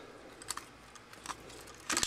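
A few small, scattered clicks from the plastic parts and joints of a Transformers Voyager Class Bludgeon figure as it is handled and its pieces are rotated.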